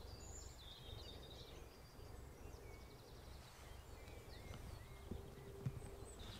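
Faint outdoor ambience: small birds singing and chirping over a steady low rumble.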